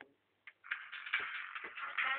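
Distorted, harsh music starts about half a second in and runs on, with a few sharp knocks through it.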